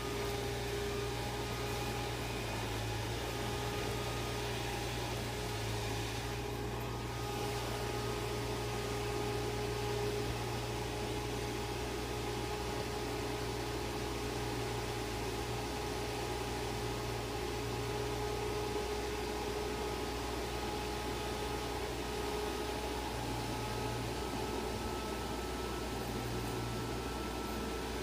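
Electric inflation blower running steadily, a constant whirring hum with a steady whine, as it blows up an inflatable photo booth dome.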